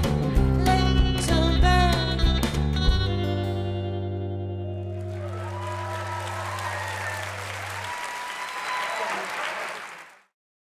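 Live rock band of acoustic and electric guitars, electric bass and drums playing the final bars of a song, landing on a last chord about three seconds in that rings out and fades. Audience applause and cheering swell from about halfway through.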